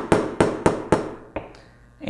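Hammer tapping a steel pinion gear onto the shaft of a small brushless motor: four quick, even taps at about three a second, each ringing briefly, then a lighter tap about a second and a half in as the pinion seats.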